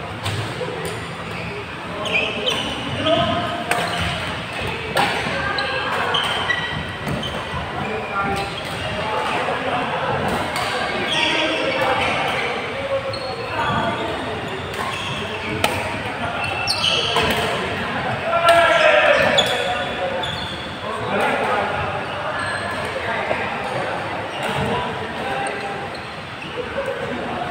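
Badminton rallies in a large indoor hall: irregular sharp racket hits on shuttlecocks from this and neighbouring courts, short shoe squeaks on the court floor, and players' voices carrying through the hall.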